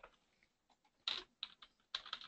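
Computer keyboard keys pressed, about four separate clicks starting about a second in: keystrokes zooming the browser view in.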